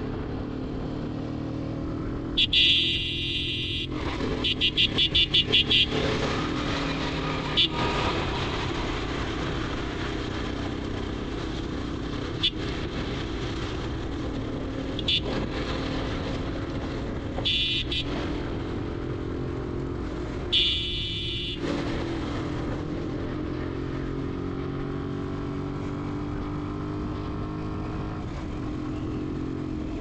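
Sport motorcycle engine running at road speed, its hum rising and falling slowly in pitch, with wind and road noise. Loud vehicle horn honks cut through several times: a long blast a few seconds in, then a rapid string of short toots, and further blasts later on.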